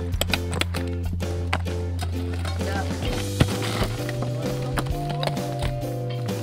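Background music with a steady low drone and repeating chords, over which a metal pick strikes rock in sharp knocks, the loudest about three and a half seconds in.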